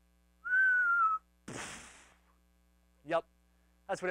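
A person whistling one clear note for under a second, sliding slightly down in pitch. A short breathy hiss follows, and a brief spoken sound comes near the end.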